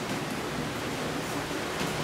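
Steady, even hiss of classroom room noise, with a faint short tick near the end as chalk writes on the blackboard.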